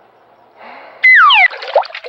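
A comic sound effect: a loud, high whistle-like tone held for an instant and then sliding steeply down in pitch, followed by splashing water.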